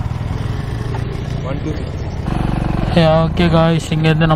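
Motorcycle engine idling with a steady low pulse, then picking up a little over two seconds in as the bike pulls away. A voice comes in near the end.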